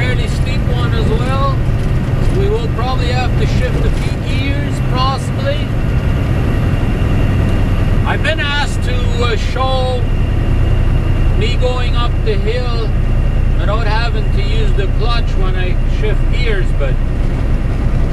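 Semi truck's diesel engine pulling hard up a hill, a steady low drone heard from inside the cab. A voice carries on over it at intervals.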